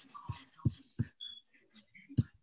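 A few faint, short thumps over a video-call connection, three in quick succession about a third of a second apart in the first second.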